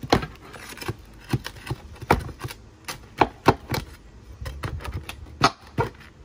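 Flat pry bar working under asphalt shingles to lift them and free the roofing nails: an irregular string of sharp clicks and knocks of metal on shingle and nail.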